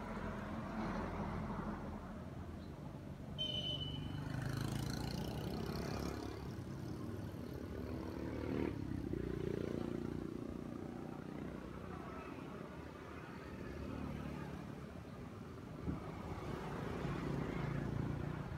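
A vehicle engine running steadily. A brief high-pitched beep comes about three seconds in, and a sharp click near the middle.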